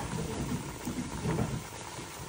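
Thick porridge bubbling in a pot on the stove, with irregular low plopping as bubbles burst through the heavy mixture.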